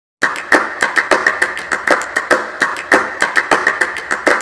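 A rapid, irregular series of sharp clicks or taps, several a second, starting just after a moment of silence.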